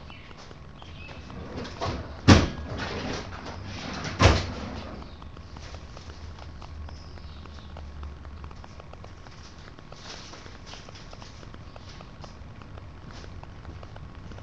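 Two sharp knocks about two seconds apart, like a cupboard door being shut in a workshop, followed by faint rummaging ticks over a low steady hum.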